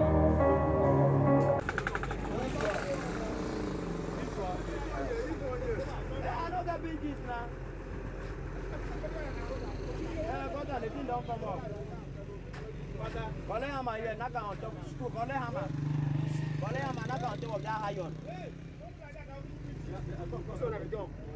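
Background music that cuts off about a second and a half in, giving way to construction-site sound: several men's voices talking over a steady low engine drone, which grows louder for a couple of seconds near the end.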